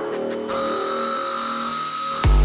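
Opening of an acidcore electronic live set: layered sustained synth tones with no drum beat, a few short ticks at the start and a higher held tone entering about half a second in.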